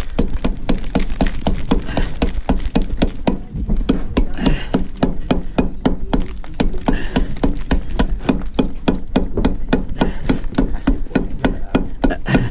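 Brick hammer chipping at a clinker concrete block, trimming a piece out of it with quick repeated strikes, about four a second.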